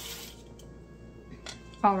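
A spatula scraping across a parchment-lined baking sheet as it slides under a cookie, a short hiss at the start. Soft background music follows, with a small click about a second and a half in.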